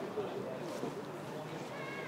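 Faint, distant voices of players and spectators calling out over a low open-air background hum.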